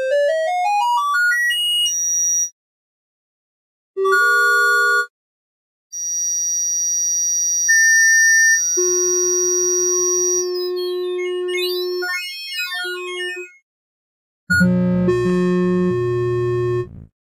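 Synthesized triangle-wave tones from a Lambdoma pitch grid tuned to a 1/1 of 360.36 Hz. A fast run of notes steps upward, then a short chord sounds, then several held notes overlap, including one at the 360 Hz reference. Quick runs of notes and a dense chord with low notes near the end follow, with short silences between.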